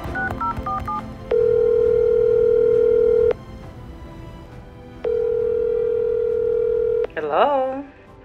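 Phone ringback tone of an outgoing call: two steady rings of about two seconds each with a pause between, after background music fades out. The call is answered near the end and a voice comes on the line.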